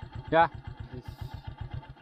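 Motorcycle engine idling, a steady, even beat of about ten low pulses a second.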